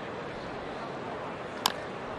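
Steady ballpark crowd murmur, then, about one and a half seconds in, a single sharp crack of a bat meeting a pitched baseball: weak contact that sends a slow roller down the line.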